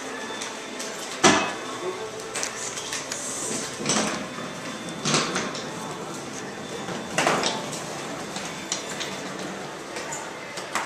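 Four loud knocks or clunks, a second or two apart, each ringing on briefly, with smaller clicks in between, over a faint murmur of voices.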